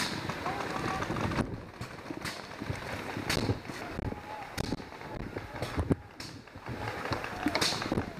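Wind rumbling on the microphone, with irregular sharp knocks and brief snatches of faint distant voices.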